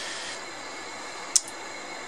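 Steady hiss of workshop room noise, with one short, sharp click a little past halfway through.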